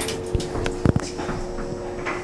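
1911 Otis traction elevator setting off after its car button is released: a steady two-tone hum from the machinery, with a couple of sharp clicks, the loudest about a second in.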